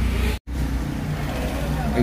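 Steady low rumble of a car heard inside the cabin. It cuts out completely for an instant about half a second in.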